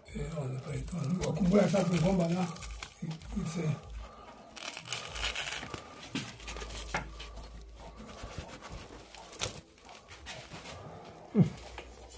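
Woven plastic roof-lining sheet crinkling and rustling as it is gripped and pulled back from the wall by hand, with the rasp of the sheet tearing.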